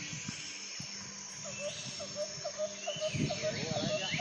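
Birds chirping: a quick run of short repeated calls from about a second and a half in, with higher gliding chirps above, over a faint steady background.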